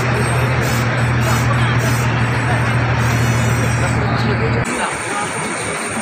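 Loud outdoor procession din of crowd voices and music, over a steady low engine hum that cuts off abruptly about four and a half seconds in.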